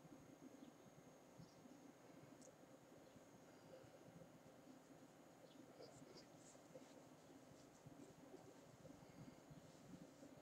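Near silence: faint room tone with a thin steady high whine and a few faint scattered ticks.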